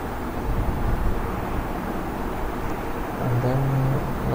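Steady low rumble and hiss of background noise, with a short hummed voice sound near the end.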